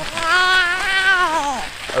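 An infant cooing: one long, high, slightly wavering vocal sound that falls in pitch at its end.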